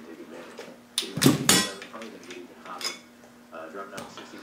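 Clinks and a short rattle of steel valvetrain parts as an LS rocker arm and its bolt are unbolted and lifted off the cylinder head: a sharp click about a second in, a brief rattle right after, and a lighter click near the end.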